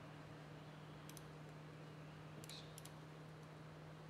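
Near silence: a faint steady low hum with three faint clicks from working the computer, one about a second in and two close together just before the three-second mark.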